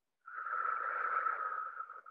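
A slow, audible breath out, one long exhale of about two seconds that starts a moment in and fades near the end.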